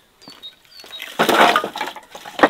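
Split firewood clattering onto the brick floor of a wood-fired oven as logs are piled in, a loud jumble of wood knocking on wood and brick in the second half.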